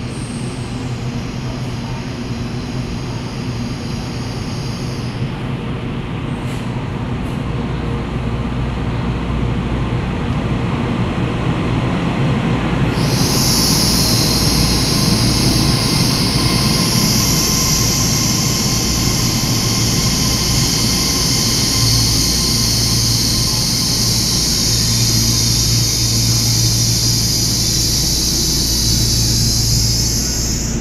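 Taiwan Railways EMU3000 electric multiple unit pulling into an underground platform. Its rumble builds as it approaches. From about halfway in, a loud, steady high-pitched squeal holds as it brakes and slows to a stop, fading out at the end.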